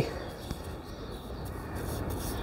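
Quiet steady outdoor background hiss with the faint rubbing of a paintbrush working liquid wood hardener into rotted wood, a little louder near the end.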